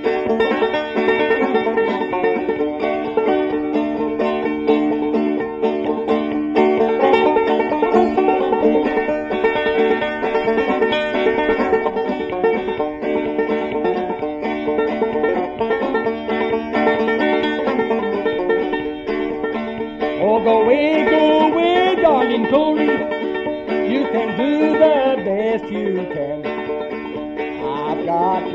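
Bluegrass string band playing an instrumental break: banjo picking over guitar accompaniment. A sliding, bending lead line comes in about two-thirds of the way through.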